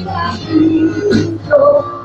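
Live Christian worship song in Spanish: women's voices singing held notes into microphones over keyboard and acoustic guitar accompaniment.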